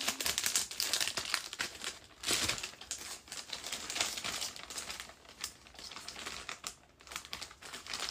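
Crinkly plastic packaging being handled, a dense run of crackles with brief lulls about two seconds in and near seven seconds.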